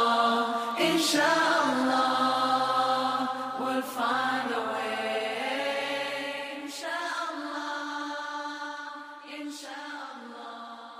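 Background nasheed with wordless vocals holding long notes, fading out steadily.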